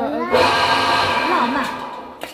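Several women's voices talking over one another, loud for most of the two seconds.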